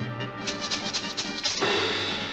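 Music from the 1940s Disney cartoon's soundtrack, with a fuller, louder swell about one and a half seconds in.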